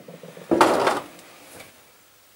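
Metal clunk and scrape lasting about half a second as the newly mounted electric motor is swung by hand on its freshly driven pivot pin on the pillar drill's head.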